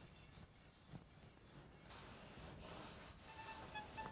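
Near silence: faint scraping of a pernambuco bow stick being worked on a wooden bench. A violin note fades in near the end.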